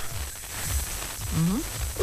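A pause in a phoned-in radio conversation: low hum and hiss of the telephone line, with one short rising vocal sound, like a brief 'aha', about a second and a half in.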